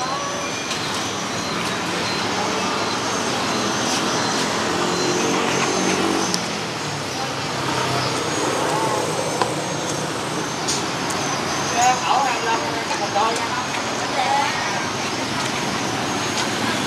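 Steady street traffic noise with a motor vehicle engine passing about four to six seconds in, and people talking in the background.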